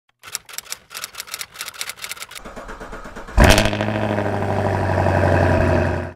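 A car engine cranking on the starter with a quick, even clicking beat, then catching a little over three seconds in with a sudden jump in level and running on steadily.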